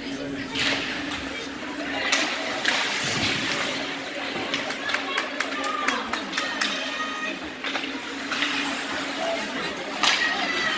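Ice hockey play from rinkside: skates scraping the ice in several hissing strokes, sharp clacks of sticks and puck, and shouting voices, over a steady low hum in the arena.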